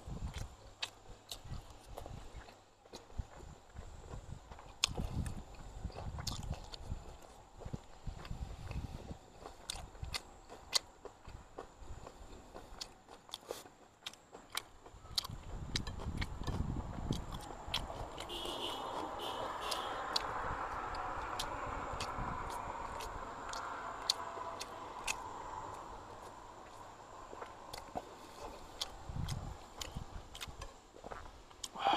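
Close-up chewing and mouth sounds of a man eating boiled pork and rice, with many small wet clicks and soft low thumps. In the second half a steadier rushing sound swells for several seconds and fades.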